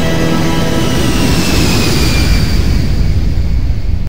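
Loud intro music for a title sequence. A held electronic chord gives way about a second in to a rushing, rumbling whoosh with a falling whistle, which cuts off suddenly at the end.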